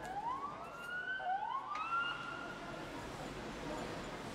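A siren wailing over the hum of a town square: two rising wails, each climbing and then levelling off, the second starting about a second after the first.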